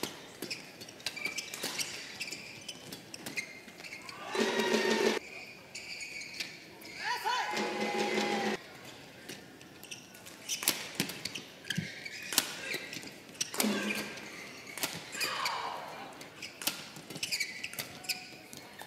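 Doubles badminton rallies: rackets sharply striking a feather shuttlecock again and again, with short shouts from players several times between the hits.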